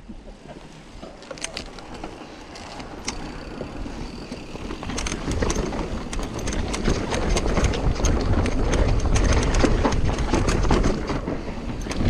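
Mountain bike descending a dusty dirt singletrack: knobbly downhill tyres rolling over dirt and roots, with the chain and frame rattling over the bumps and wind on the camera microphone. It grows louder as speed builds, from about five seconds in.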